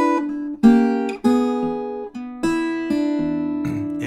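Steel-string acoustic guitar played fingerstyle: a short blues phrase of plucked chord hits with single notes filling in between, each hit left to ring. Fresh attacks land about half a second, a second and two and a half seconds in.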